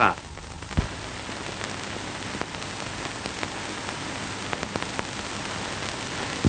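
Steady hiss and crackle of an old optical film soundtrack, dotted with scattered clicks and pops, one sharper pop about a second in.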